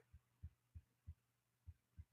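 Near silence: room tone with about six faint, dull low thumps at irregular intervals.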